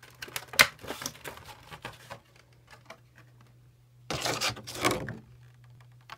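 A cardboard card box being handled and opened: a few sharp clicks and taps, then about a second of tearing packaging about four seconds in.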